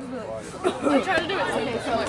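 People chatting near the camera, with no clear words.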